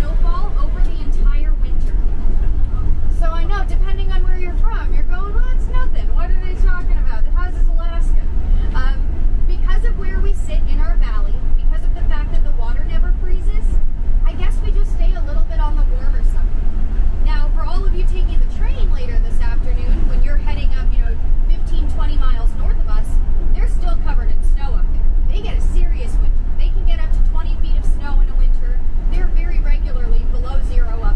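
Steady low engine and road rumble inside a moving vintage tour bus, with a voice talking over it throughout.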